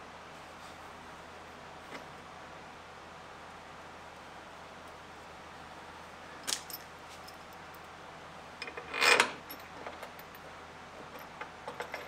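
Quiet handling of a steel bolt and washers while anti-seize is applied: a sharp click about six seconds in, a louder short metallic clatter about nine seconds in, and a few faint ticks near the end, over low steady room noise.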